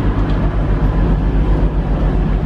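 Class 185 diesel multiple unit standing at the platform with its engines idling: a steady low hum.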